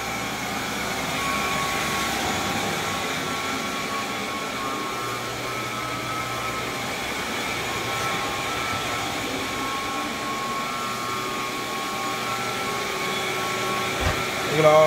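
A single-disc rotary floor machine scrubbing a wet hardwood floor with a cleaning pad, running as a steady drone with a low hum. A wet extraction vacuum runs alongside with a steady whine as it sucks up the dirty cleaning solution.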